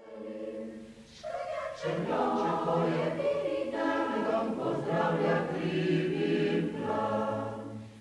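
Mixed choir of men's and women's voices singing held notes in parts, quiet for the first second and then fuller.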